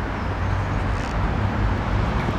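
A steady low background rumble with a faint hiss, level throughout, with no distinct events.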